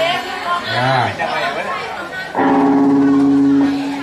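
Band members' voices talking between songs, then about halfway through a single held electric guitar note rings out steadily for over a second.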